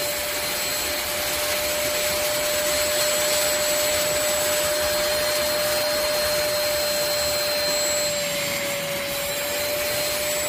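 Handheld wet-and-dry carpet and upholstery washer running steadily, its suction motor giving a constant whine over a rush of air as the nozzle works the carpet. The pitch sags slightly near the end.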